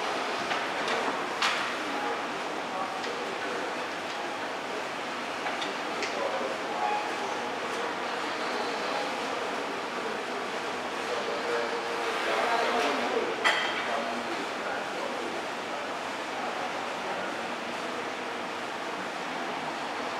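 Indistinct background voices over a steady noisy hum, with a few sharp clicks and a short louder stretch ending in a knock about thirteen seconds in.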